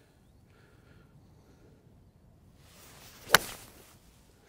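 A golf five iron swung at the ball: a short swish of the swing, then one sharp crack of the clubface striking the ball a little over three seconds in.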